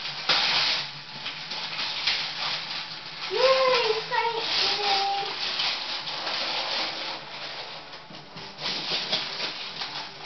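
Wrapping paper crackling and tearing in irregular bursts as a gift box is unwrapped by hand. A short vocal sound rises and falls about three and a half seconds in.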